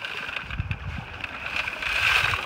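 Wet gravel and sand being shaken out of a mesh collecting bag onto a wire-mesh sieve tray, growing louder near the end, over the steady rush of the shallow river.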